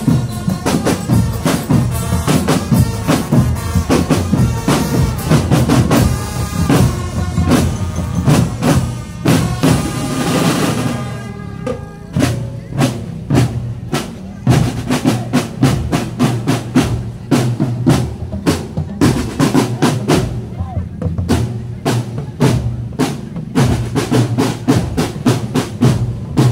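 Marching drum band playing, with snare and bass drums in a fast steady beat. For roughly the first eleven seconds a melody sounds over the drums; after that, drums alone.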